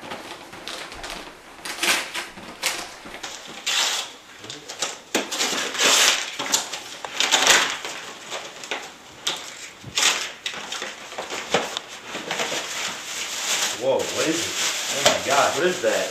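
Wrapping paper being torn off a gift and crinkled in a string of short, irregular rustling tears, then tissue paper rustling as the box is opened.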